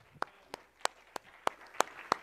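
Sparse handclapping from a congregation: sharp, evenly spaced claps about three a second, with faint applause filling in behind them toward the end.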